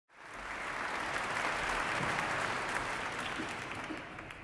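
Audience applauding, easing off toward the end.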